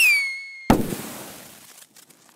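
Logo-reveal sound effect: a falling whistle that settles on one pitch, then a sudden bang about two-thirds of a second in that dies away over the next second.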